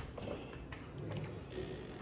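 Quiet room noise with a few faint light clicks and rustles.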